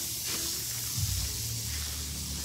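Potting soil rustling and crunching as gloved hands press it down around a fern in a plastic pot, over a steady hiss.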